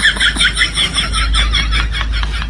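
A comedy sound effect: a rapid, even string of short high-pitched squeaky chirps, about seven a second, over a low hum.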